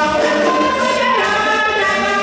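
Beninese traditional music performed live: a group of voices sings a melody together in long held notes, over light hand percussion.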